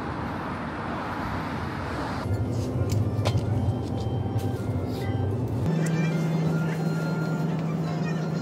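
Soft background music over ambient sound: an even street hiss for the first two seconds, then a steady low hum inside a convenience store, which changes to a single steady tone near the end.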